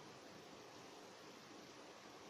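Near silence: a faint, steady rush of noise with no distinct sounds in it.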